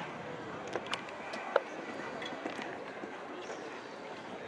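Horse landing after a fence and cantering on a sand arena: a few sharp knocks from its hooves, the loudest about one and a half seconds in, over a background murmur of spectators' voices.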